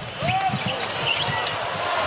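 Basketball being dribbled on a hardwood court, short repeated bounces over the steady murmur of an arena crowd.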